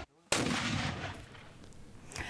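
A single mortar shot: a moment of dead silence, then a sudden loud report that trails off over about a second and a half.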